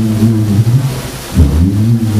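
A low, wavering drone from the live performance's music, which dips sharply in pitch about one and a half seconds in and then carries on.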